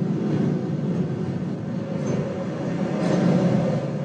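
Steady low rumble with a hum, from the soundtrack of tokamak plasma footage played through the room's speakers.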